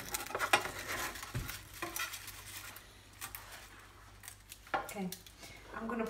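Knife cutting through a baked filo cheese pie in a metal baking tray: a run of dry crackles from the crisp filo layers and clicks of the blade against the tray. The crackling is densest in the first two seconds and thins out after about three.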